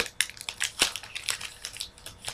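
Trading-card box packaging being handled and opened, crinkling and crackling in an irregular run of small clicks.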